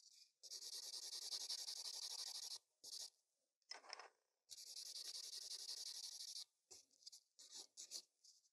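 Nail buffer block rubbing rapidly back and forth over a chrome-powdered gel nail tip, scuffing the shiny surface so the top coat will stick. It goes in two runs of about two seconds each, with a few short strokes between them and near the end.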